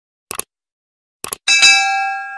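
Sound effects for a subscribe-button animation: a short click, then a quick double mouse click a little past a second in, then a bright bell ding that rings on and slowly fades.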